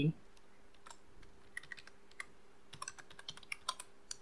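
Computer keyboard typing: faint, irregular keystrokes that come quicker about three seconds in. A faint steady hum runs underneath.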